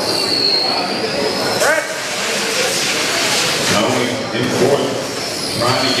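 Electric 1/10-scale RC oval trucks with 21.5-turn brushless motors racing past on carpet. Their high motor whine dips and rises as they pass close, with a rising sweep about two seconds in and a louder rush of noise in the middle.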